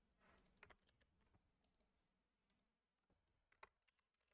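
Near silence, broken by a few faint clicks of computer mouse and keyboard use: a cluster about half a second in and a single click near the end.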